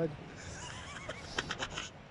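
A high, wavering voice-like call, followed by a few sharp clicks.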